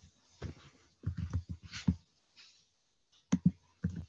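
Irregular clicks and short runs of crackling, a few seconds of scattered small noises picked up by a participant's microphone on a video call.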